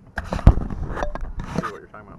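Canoe paddling: a loud knock against the canoe about half a second in, with two short splashes of water from paddle strokes.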